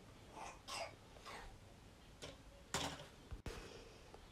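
Faint handling noises: a few soft brushing sounds, then a sharper metallic knock about three seconds in as a round metal cake pan is set down on a wire cooling rack with an oven mitt.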